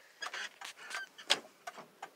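Mostly a pause in a man's speech: faint scattered clicks and a quietly spoken "what" a little past the middle.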